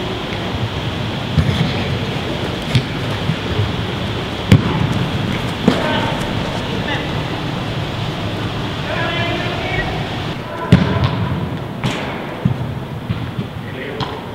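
Echoing sports-hall ambience: a steady wash of distant voices, one calling out about nine seconds in, with occasional sharp thuds, the loudest about four and a half and eleven seconds in.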